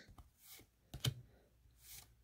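A handful of Pokémon trading cards being slid one by one from the front of the stack to the back: a few faint, short clicks and swishes of card against card, about a second apart.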